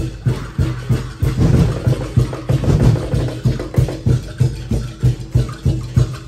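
A tribal percussion band's drums playing a loud, driving beat, about two to three strokes a second.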